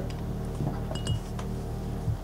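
A few light clinks of small hard objects touching, one with a brief high ring about a second in.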